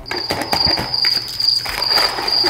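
Cricket-chirping sound effect: a high, steady chirp pulsing about twice a second, starting suddenly at the beginning, the stock 'awkward silence' gag. Under it, light clicks from a straw being worked in a cup of ice.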